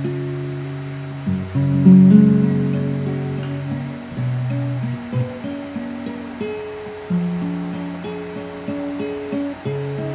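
Solo nylon-string classical guitar played fingerstyle: plucked melody notes ring over held bass notes, with the loudest accent about two seconds in.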